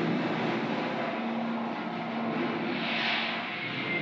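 Recorded war sound effect in a museum invasion diorama: a steady engine noise like military aircraft, swelling briefly about three seconds in.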